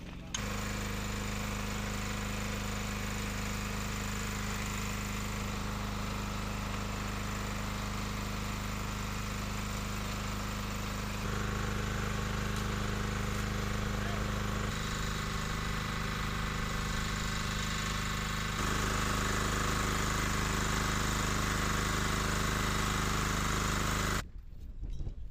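Small engine running steadily at a constant speed, a continuous drone whose tone and loudness shift abruptly three times, getting louder after about the halfway point.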